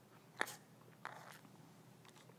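A quiet pause in speech with a sharp click a little way in and a couple of fainter clicks after it: the mouth clicks and breath of a man at a close microphone between words.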